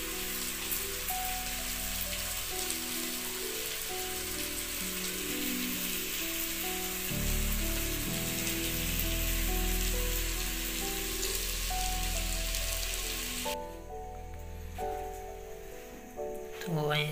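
Oil sizzling steadily as methi muthiya fry in a steel pot over a wood fire, with small pops, under soft background music. The sizzle stops suddenly near the end, leaving the music.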